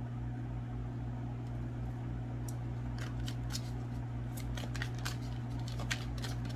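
Tarot cards being shuffled or handled by hand: a run of light, crisp clicks that starts about halfway through, over a steady low hum.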